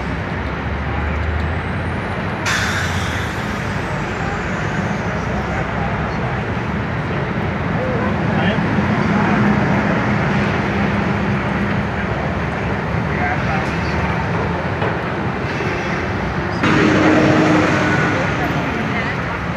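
City street traffic: a steady roar of vehicles running and passing. A brief hiss comes about two and a half seconds in, and near the end the sound grows louder with a steady low hum as a vehicle passes close.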